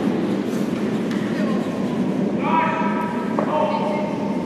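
A curling stone rumbling as it runs down the ice, with brooms sweeping. About two-thirds of the way through comes a long, held, flat-pitched shout, a curler's sweeping call.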